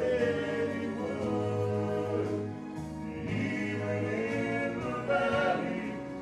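Male gospel quartet singing in four-part harmony, holding long chords that shift together every second or so.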